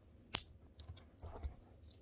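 A sharp metallic snap, then a few faint clicks and scraping, as a Swiss Army knife bottle opener pries the steel locking collar off an Opinel knife's wooden handle; the popping and snapping is normal when the collar is forced off.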